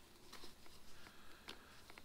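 Faint handling of a helmet chin strap being threaded through a quick-release buckle's loop: a few light ticks and rustles.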